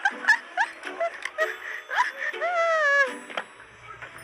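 High-pitched laughing and squealing voice, with one long, drawn-out cry that glides in pitch a little after two seconds in.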